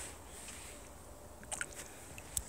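Quiet outdoor ambience with a low steady hiss, and a few faint short clicks about one and a half seconds in.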